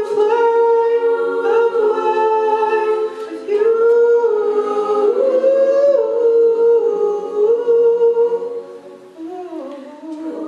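Mixed-voice a cappella group singing in harmony with no instruments: a male lead on a handheld microphone over sustained backing chords from the others. The singing dips away briefly near the end before the voices come back in.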